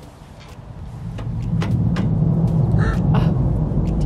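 A deep rumble swells up from about a second in and then holds steady, with a few light clicks over it. Those hearing it take it for a big plane or for thunder.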